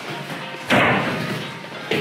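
A single sudden thump or slam about two-thirds of a second in, dying away over the next second, over background music.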